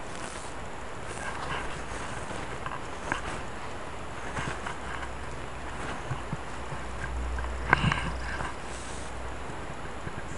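Close handling noise of a dug-up glass Coke bottle being turned over in dry grass: faint rustling with scattered light knocks and clicks, and a brief low rumble on the microphone with a sharper click about three-quarters of the way through.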